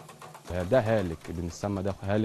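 A man speaking in short phrases in a low voice, from about half a second in; a faint low hum comes before it.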